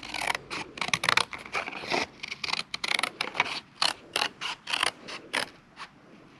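Scissors cutting thin cardboard in an uneven run of short snips, several a second.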